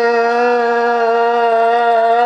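A woman's voice holding one long, loud, steady wailing note, a keening lament in grief.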